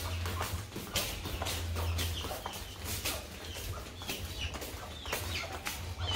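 A hen clucking a few short times, mixed with the slap of flip-flop footsteps on a concrete floor.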